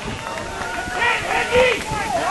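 Voices calling and shouting over a background of other voices, the calls louder near the middle and end.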